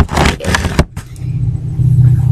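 Scraping and rubbing noise as a handheld camera is moved about for roughly a second, then a steady low hum takes over.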